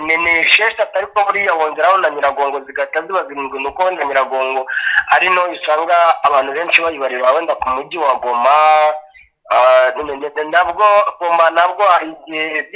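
Speech only: a person talking steadily, with one short pause about nine seconds in.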